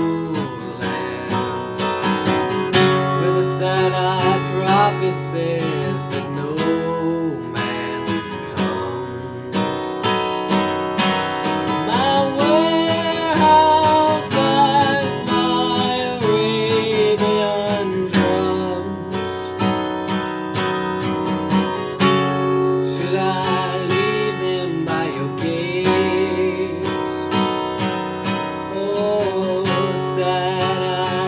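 Acoustic guitar strummed steadily, with a man singing a slow folk ballad over it.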